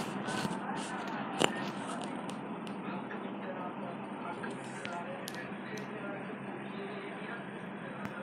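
Bhatura deep-frying in hot oil in a kadai: a steady sizzle with scattered crackles and pops. The pops come thickest in the first few seconds and thin out later, with one sharp click about a second and a half in.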